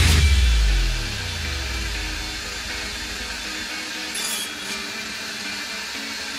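Table saw switched off, its motor and blade coasting down with a hum that falls steadily in pitch over about three seconds. A light knock of the wood board being handled on the sled about four seconds in.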